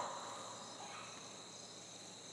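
Faint, steady high chirring of crickets.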